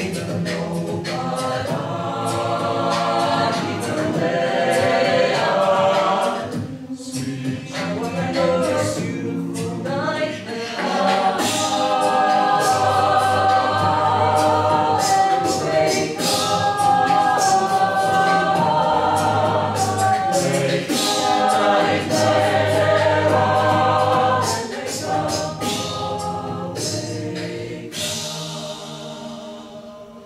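Mixed-voice a cappella group singing in layered harmony, with vocal percussion beats throughout. It thins out briefly a few seconds in, swells to its fullest through the middle and eases off near the end.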